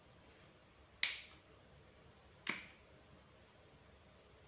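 Two sharp clicks, about a second and a half apart, each dying away quickly, over faint room tone.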